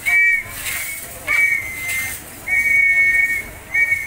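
A whistle blown in four blasts, one short and then three longer ones, each sounding two close notes at once, setting the beat for an Akamba traditional dance.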